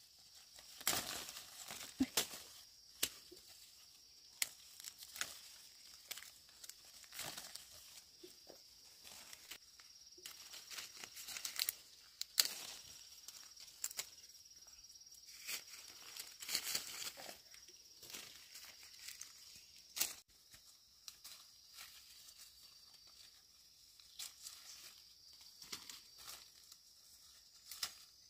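Leaves rustling and fruit stems snapping as small fruits are picked by hand from a tree branch, in irregular crackles, over a faint steady high insect drone.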